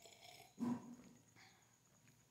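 A person sipping hot coffee from a mug: a faint slurp, then a short throaty swallowing sound a little over half a second in.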